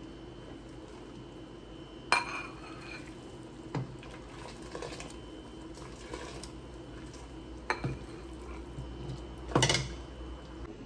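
A metal ladle clinking against a stainless steel stockpot while chicken pho broth is ladled into a bowl, with a faint pour of liquid between the clinks. Four sharp clinks, the loudest near the end, over a low steady hum.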